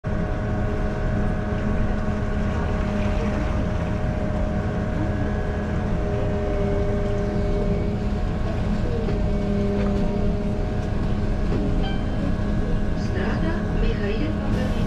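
Inside the driver's cab of a city bus moving through traffic: a steady low running rumble with several constant whining tones over it.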